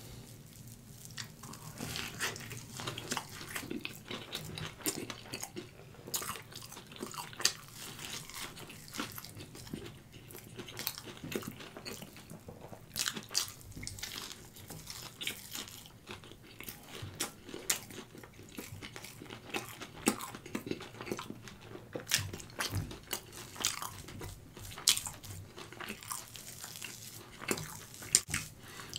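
Close-miked eating: a crisp hash brown patty with melted cheese being torn, bitten and chewed, with many small crunches and wet mouth clicks.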